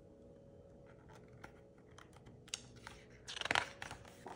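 A hardcover picture book's paper page being handled and turned: a few faint scattered ticks, then a short rustle of the page turning near the end.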